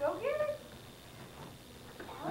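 A single short cry, about half a second long, right at the start, rising and then falling in pitch; after it only low room sound.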